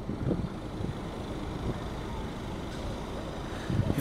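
Steady low rumble of road traffic, with no distinct events.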